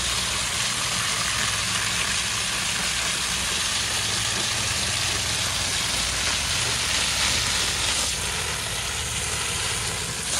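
Garden hose nozzle spraying water onto a pleated pool cartridge filter to rinse it, a steady hiss of spray with water splashing through the pleats. A steady low motor hum runs underneath.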